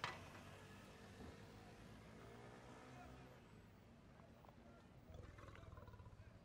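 Near silence with stage room tone, broken by a single sharp knock right at the start as something is set down or struck on a table, then faint handling clatter near the end.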